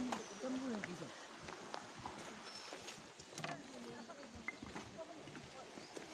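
Faint voices of people talking at a distance, with scattered light knocks and clicks.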